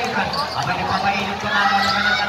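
A basketball being dribbled on a hard outdoor court, heard among the voices and chatter of a watching crowd.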